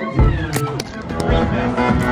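Electronic background music with a drum beat.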